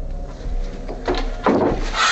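Two short hissing bursts, about a second in and again near the end, over a low steady drone.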